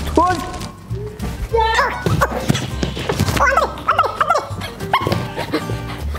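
Background music with a pulsing bass beat, under a string of short, high, bending vocal cries.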